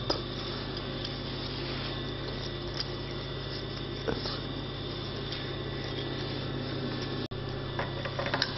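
A steady low machine hum fills the room, with a few faint ticks; the sound cuts out for an instant about seven seconds in.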